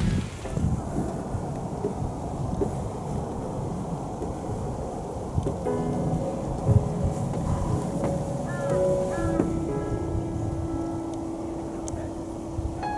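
Low rumbling wind noise on the microphone. Background music with held notes comes in about six seconds in.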